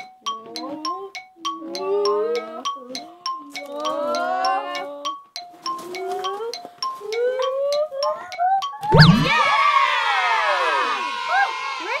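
Children's background music with a ticking beat of about four clicks a second and bouncy gliding notes. About nine seconds in, a paint-covered tennis ball drops into a cup of water with a low thud, and the children shriek and cheer.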